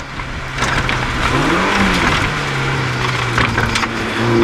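A rally car's engine heard from inside the cabin as it takes a square right. Its note rises and falls about a second and a half in, then holds steady, over constant road noise.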